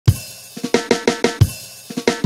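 Drum kit playing the opening fill of a reggae remix. A heavy hit with cymbal opens it, then a quick run of about six drum strokes, then another heavy hit with cymbal about one and a half seconds in.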